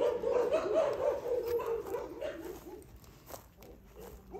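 Blue Lacy puppies whining, a wavering high cry that fades away about two and a half seconds in, leaving a few faint clicks.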